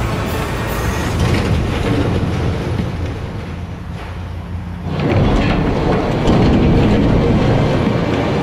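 Steel platform accommodation module collapsing under excavator pulls: heavy metal crashing with debris rattling and clattering down, easing off about three seconds in. Soundtrack music is laid over it.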